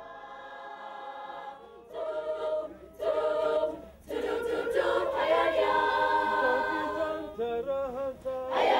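A choir of girls singing a cappella, coming in about two seconds in and growing fuller from about halfway, after soft background music fades out.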